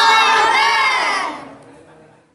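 A group of about a dozen children shouting a cheer together in chorus, dying away about a second and a half in.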